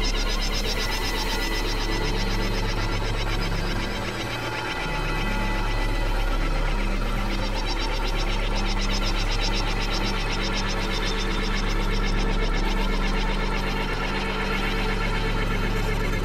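Experimental electronic synthesizer drone: a sustained deep bass tone under low notes that step from pitch to pitch, with a dense, fast-pulsing buzzy texture in the highs. It thins briefly about four seconds in.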